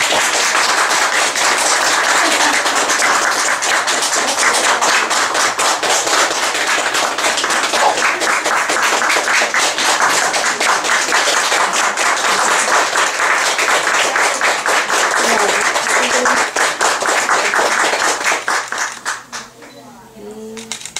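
Audience applauding, dense and steady, dying away near the end.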